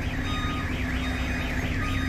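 A truck's warbling reverse alarm, its tone sweeping up and down about six times a second, over the steady low hum of the truck's engine as the tractor unit is manoeuvred.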